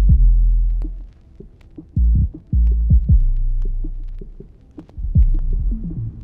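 Trap beat outro stripped down to deep 808 bass notes, a few of them, each sliding down in pitch, with faint sparse ticks of percussion over them and no melody.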